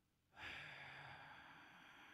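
A man's long, soft breath into a close microphone, starting about half a second in and slowly fading.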